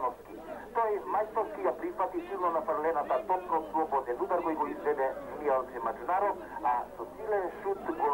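Speech only: a voice talking without a break, sounding thin like a broadcast.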